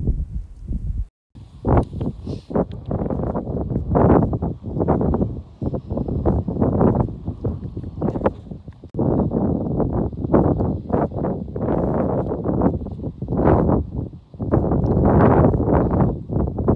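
Wind buffeting the microphone in uneven gusts, a low rumbling rush that surges and dips, with a brief dropout about a second in.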